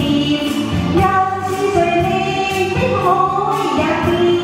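A woman singing a Chinese pop ballad into a handheld microphone, with musical accompaniment, holding and shifting between sustained notes.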